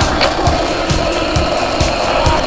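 Music with a steady beat, about two beats a second, over the rolling of a skateboard's wheels on rough asphalt.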